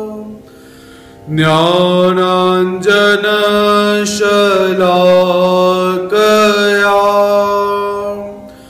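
A man chanting a Hindu devotional invocation solo, in long held notes, with a pause for breath about a second in.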